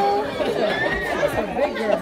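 Overlapping chatter of several people's voices, none of it clear words, from adults and small children in a room.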